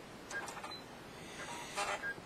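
Two brief, faint mechanical sounds from a home sewing machine, about a second and a half apart.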